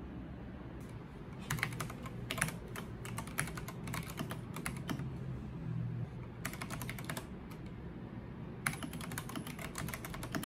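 Typing on a mechanical keyboard newly fitted with keycaps: runs of quick key clacks, starting about a second and a half in, pausing briefly twice and picking up again near the end.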